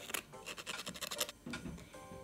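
A button rubbed back and forth on sandpaper by hand in quick, short rasping strokes, sanding down the stub left where its shank was snipped off. The strokes stop after about a second, followed by faint handling.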